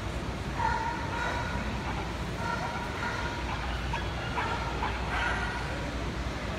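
Steady low rumble of a large indoor hall, with indistinct voices of a crowd in the background.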